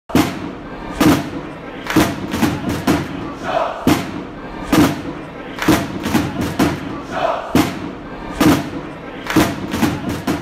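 Intro music for a club channel: a heavy thumping beat about once a second, with stadium crowd noise and a couple of shouts layered in.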